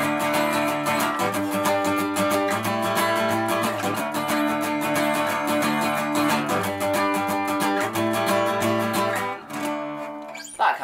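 Acoustic guitar strummed in a steady, straight (unswung) eighth-note down-up pattern, looping a D, D, G, A chord progression at a fairly sedate speed, with the off-beat upstrokes slightly accented. The strumming stops shortly before the end.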